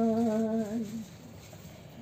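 An elderly woman singing from a songbook, holding one steady note for about a second, then a short pause for breath.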